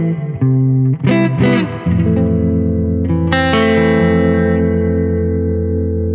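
Electric guitar played through a Balthazar Cabaret MKII, a 15-watt amp head with EL84 power tubes. A run of quickly picked notes gives way to a chord about two seconds in and another about a second later, both left to ring and slowly fade.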